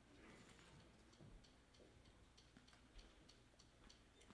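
Near silence: faint room tone with soft, evenly spaced high ticks, about three a second.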